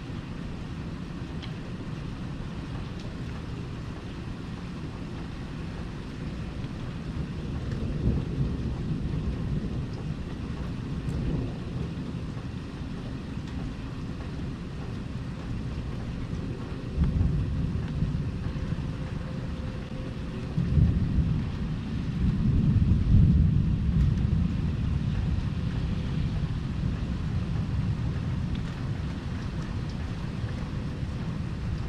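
Rolling thunder rumbling low over steady rain. The rumble swells a little about a quarter of the way in, builds again past the middle, and is loudest about three quarters through before it slowly fades.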